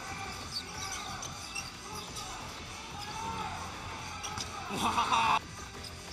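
Basketball game sound on an indoor court: a ball being dribbled on the hardwood under steady arena noise. About five seconds in, a brief loud swell of voices rises and then cuts off abruptly.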